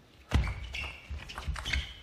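Table tennis rally: the plastic ball clicking off rackets and table in quick succession, starting about a third of a second in, with short high squeaks of shoes on the court floor.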